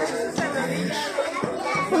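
Children's voices and chatter over music playing in the background, with a few held musical notes.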